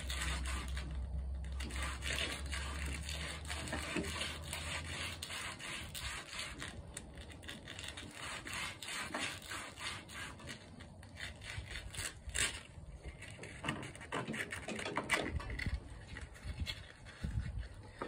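Intake valve being twisted back and forth by hand against sandpaper on its seat in a small engine's cylinder head: quiet, irregular gritty rubbing and scraping. It is a makeshift valve lapping job that resurfaces the valve face and seat.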